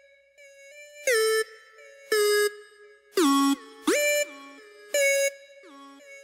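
Instrumental intro of a hip-hop beat: a bright synth lead plays short loud stabs about once a second, each note sliding down in pitch, over a quieter held tone, with no drums or bass.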